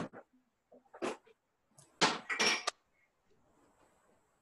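Handling noises as cups of pudding are put into a refrigerator, heard through video-call audio: a few short knocks and scrapes, the loudest a double burst about two seconds in.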